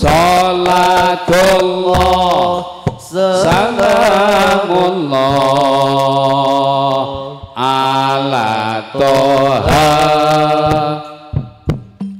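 A man chanting a devotional song through a microphone in long, held, ornamented phrases, with short breaks between them.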